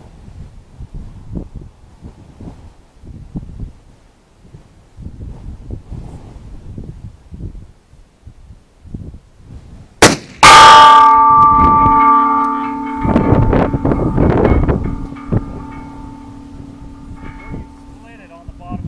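A single shot from a 7mm TCU Thompson/Center Contender pistol about ten seconds in, followed about half a second later by the bullet striking a steel plate target, which rings loudly with several tones and fades slowly. A burst of rattling sounds a few seconds after the hit.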